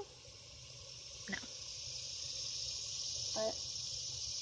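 Steady high-pitched insect buzz, a summer daytime chorus from the surrounding trees, slowly swelling louder, with two short spoken words.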